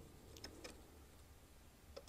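Near silence with a few faint clicks of small metal parts as a trigger pin is lined up through a binary trigger group in an AR-15 lower receiver.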